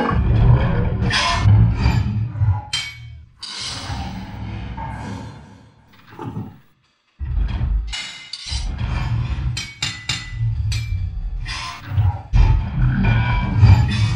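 Dramatic soundtrack music layered with heavy rumbling and repeated sharp impact sound effects. It cuts out completely for a moment about seven seconds in, then comes back just as strongly.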